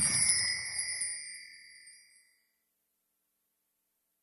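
Magical sparkle chime sound effect: a high ringing chime that fades out over about two seconds.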